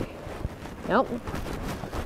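A horse stepping and shifting about under its rider on soft grassy ground: irregular dull hoof thumps and rustling.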